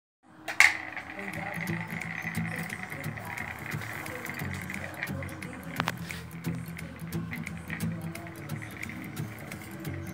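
A small toy spinning top launched onto a ceramic tile floor: a sharp click as it lands about half a second in, then a steady high whir as it spins on the tiles, with one more sharp knock near the middle.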